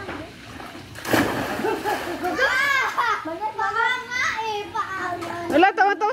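A splash of pool water about a second in, followed by children's high-pitched voices calling out.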